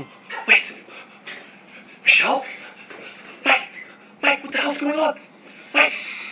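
A series of about six short whimpering, dog-like cries, several sliding down in pitch, with short pauses between them.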